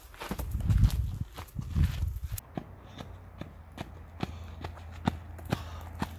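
Hurried footsteps with a heavy low rumble for the first two seconds or so, then evenly paced footsteps clicking on hard pavement, about two steps a second, over a low steady hum.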